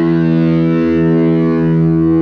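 A distorted electric guitar chord held and ringing out steadily, the song's closing chord.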